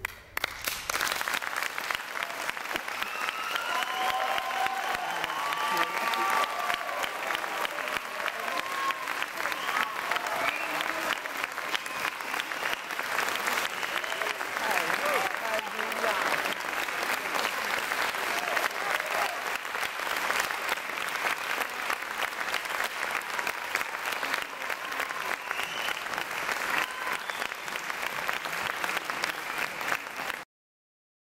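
Audience applause breaks out suddenly and keeps up steadily for the whole stretch. Voices in the crowd call out over it, mostly in the first half.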